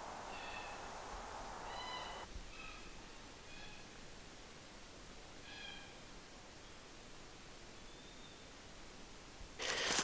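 Faint bird calls in forest: short, high notes, four in the first four seconds, one more near the middle and one around eight seconds, over a soft hiss that stops about two seconds in.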